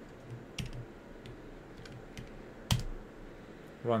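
A few separate computer keyboard key presses over faint room hum, with one sharper keystroke a little under three seconds in, as a command is entered in a terminal.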